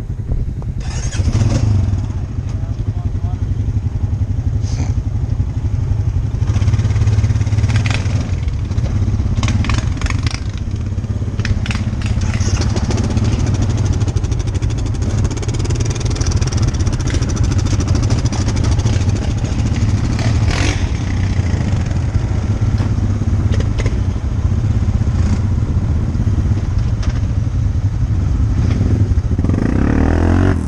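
ATV engine running steadily under load as the quad is ridden along a rough trail, with occasional knocks and clatter from the machine over the ground.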